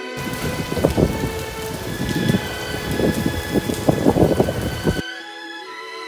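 Noisy restaurant dining room: a dense, crackly clatter and crowd noise with the background music still faint beneath it. It cuts in just after the start and stops abruptly about five seconds in.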